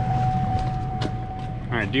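A motor running steadily, with a low rumble and a constant high whine. A man starts talking near the end.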